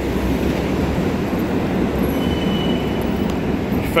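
Steady low rumble of city street noise, a heavy-traffic or subway-like roar, with a faint thin high whine briefly about two seconds in.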